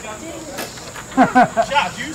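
Steady high-pitched chorus of insects, with a spectator's voice calling out briefly about a second in.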